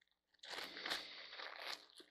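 Faint, irregular crunching and crinkling as a small object is handled and fiddled with in the hands.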